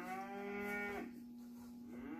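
A cow mooing: one call of about a second that rises in pitch as it starts and then holds steady, over a faint steady hum.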